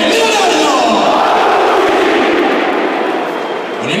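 A packed stadium crowd shouting in unison, one long drawn-out massed shout that eases off near the end as the next one rises. It is the home fans calling out a player's name during the starting line-up announcement.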